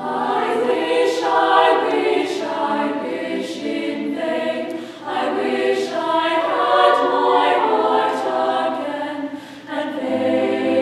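A choir of girls' voices singing together in parts, with the phrases breaking briefly about five seconds in and again near the end.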